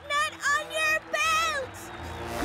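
High-pitched cartoon voice calling out in short, repeated syllables that rise and bend in pitch, over a faint steady background tone.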